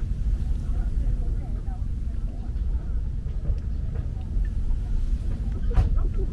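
Steady low rumble of wind buffeting the microphone, with one sharp knock near the end as an aluminium beer can is set down on the camp table.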